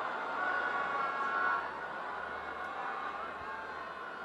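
Cricket stadium crowd as a steady background hum, with a held high note over it for the first second and a half.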